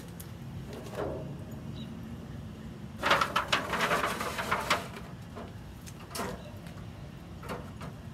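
A disposable aluminium foil water tray crinkling and scraping for about two seconds as it is slid onto the kamado's metal grill grate, with a few light clinks from the steel grill racks before and after.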